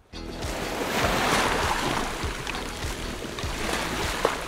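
Rushing, underwater-style water sound effect that swells over the first second or two and then eases, over background music.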